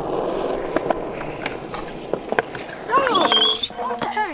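Skateboard and scooter wheels rolling over skatepark concrete, a steady rumble with a few sharp clacks. About three seconds in, people cry out as the scooter rider goes down.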